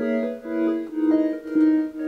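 Nord Lead synthesizer playing sustained keyboard chords with an electric-piano-like tone. The chords change as they go and swell and fade in a steady pulse about twice a second.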